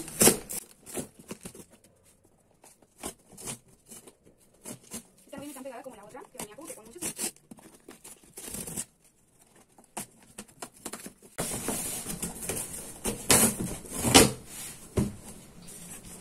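Cardboard shipping box being torn open by hand: scattered rips and rustles, then a denser run of louder tearing and crinkling in the last few seconds.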